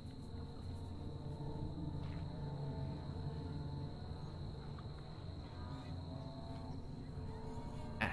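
Background ambience track of an outdoor night soundscape: faint insect chirping over a steady low hum, with a thin constant high tone.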